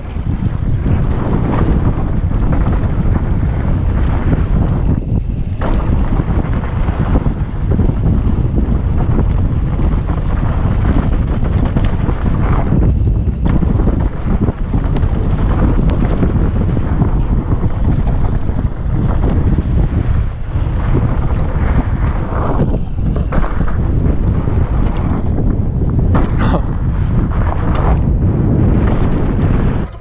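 Wind buffeting the microphone of a camera on a fat bike riding fast down a dirt trail, with the rumble of the wide tyres on the dirt, loud and steady with a few brief lulls.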